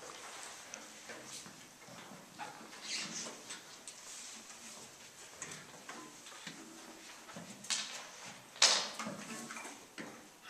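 Handling noise from a handheld camcorder being moved about: scattered rustles and light knocks, with one louder rustling burst near the end.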